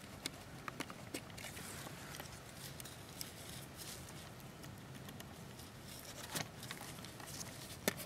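Faint, scattered clicks and taps of small 3D-printed plastic parts as gloved hands fit the eyelet pins back into a model trailer's tailgate hinges. There are several clicks in the first second and a couple more near the end, over a faint steady hiss.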